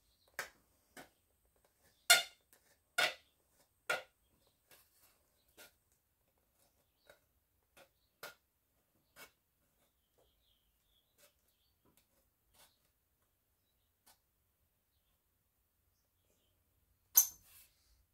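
Tin can being cut and pierced by hand with a blade: irregular sharp metal clicks and snaps, loudest about two to four seconds in and again near the end.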